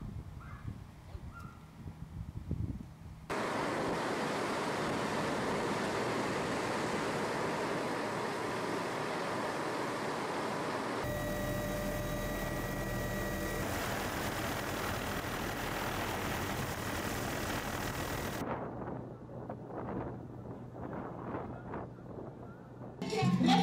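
A loud, steady rush of noise starting abruptly about three seconds in, giving way about eleven seconds in to the inside of a helicopter in flight: a steady engine-and-rotor roar with a deep rumble and a high, steady whine. It cuts off sharply a few seconds before the end, leaving faint scattered outdoor sounds.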